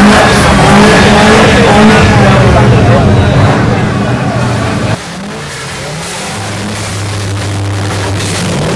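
Car engine revving, its pitch rising and falling; about five seconds in the sound drops suddenly to a quieter, steady engine note.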